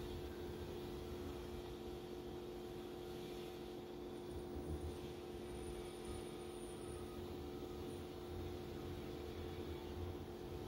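Steady low hum with a faint hiss, with no distinct event: background room tone.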